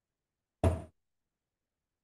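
A single short knock or thump about half a second in, dying away quickly.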